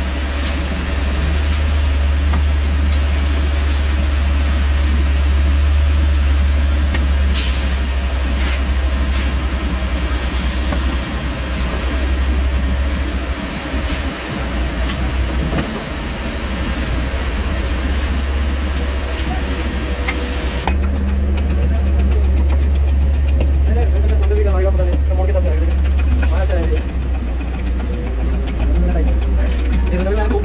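A steady low engine drone from machinery running nearby, loud throughout, with scattered clicks and scrapes of fresh concrete being scooped and rodded into steel cube moulds.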